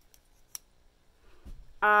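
Folding pocketknife being closed on its washer pivot: a couple of sharp clicks from the blade and lock, the loudest about half a second in, then a soft low thump near the end.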